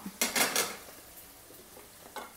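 A quick clatter of metal cookware and utensils, a few sharp clinks about half a second in, followed by only a faint low hiss.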